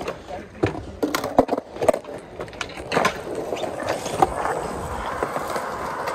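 Skateboard wheels rolling on a concrete skatepark surface, a steady rolling noise broken by several sharp clacks in the first two seconds and a few more later.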